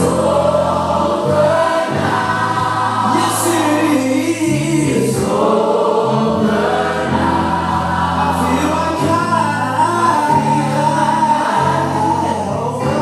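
Gospel music with a choir singing over sustained bass notes that shift every second or two.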